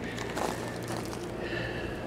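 Steady low-level outdoor background noise with a faint low hum and no distinct event.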